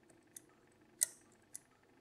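Faint, sharp metallic clicks of a hook pick probing the spring-loaded wafers of a Miwa DS wafer lock under tension: three clear ticks, the sharpest about a second in, while the last binding wafer is being sought.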